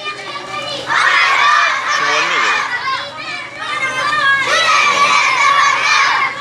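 A crowd of schoolchildren's voices raised together, calling out in two long loud stretches with a brief lull between.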